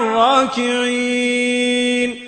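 A man chanting a Quranic verse in Arabic in the melodic recitation style. After a short gliding phrase, he holds one long steady note.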